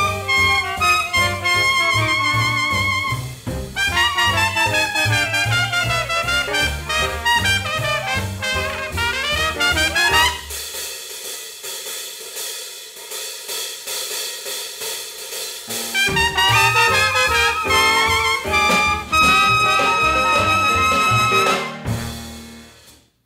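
Small jazz band of trumpet, trombone, clarinet, piano, bass and drums playing a ragtime tune. About ten seconds in, the bass drops out for a break of about five seconds, leaving the horns. The full band then comes back in and ends on a held chord that stops just before the end.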